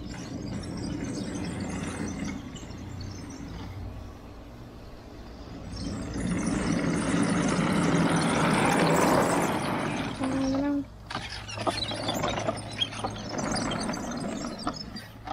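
Homebuilt wooden tank driving over grass: its twin NPC Black Max electric drive motors hum steadily and the wooden-slat tracks rattle. The rattle swells to its loudest about eight to nine seconds in and drops away sharply just before eleven seconds, followed by scattered clicks.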